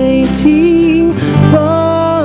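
Live worship band playing a slow song: acoustic guitar with long held sung notes that step to new pitches about half a second and a second and a half in.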